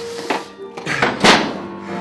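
Background music with held tones, under the crackle of a large sheet of paper being crushed into a ball and dropped to the stage floor, the loudest burst a little over a second in.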